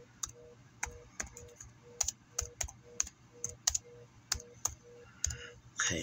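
Keyboard keys being typed: irregular sharp clicks, two or three a second, with a faint short tone pulsing about three times a second and a low hum behind them.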